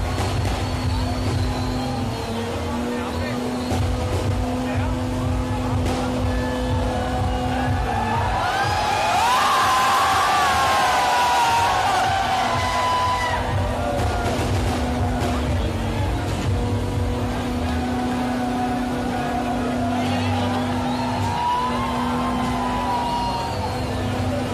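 Car engine revving hard and held at high revs during a burnout, the revs dropping off briefly every few seconds. A crowd shouts and cheers over it, loudest about ten seconds in.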